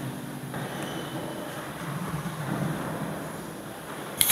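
Soft background music ends about half a second in, leaving a low, steady background noise with no distinct events.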